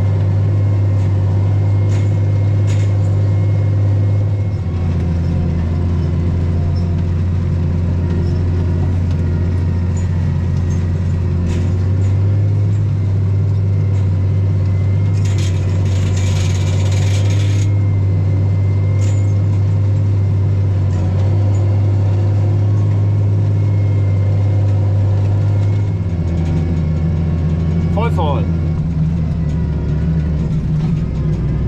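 Fendt 926 Vario tractor's six-cylinder diesel heard from inside the cab, a loud steady drone whose pitch drops about five seconds in, rises again around twelve seconds and drops once more near the end. A brief hiss sounds about fifteen to seventeen seconds in.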